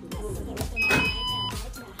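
A door-entry card reader beeping as a key card is tapped on it: a short electronic chime about a second in, stepping up from one note to a higher one, with a sharp click at its start. Background music with a steady beat runs underneath.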